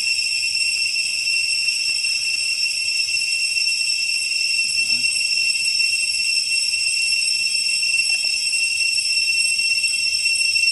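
A steady, high-pitched drone from a chorus of insects, holding unbroken at one level.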